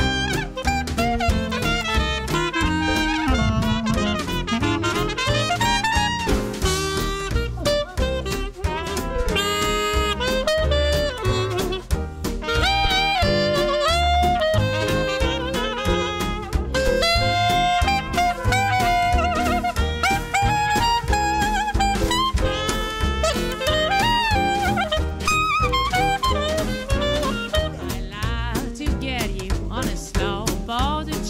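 Small swing jazz band playing an instrumental passage: trumpet and clarinet carrying the melody over guitar, double bass, piano and drums with a steady swing beat.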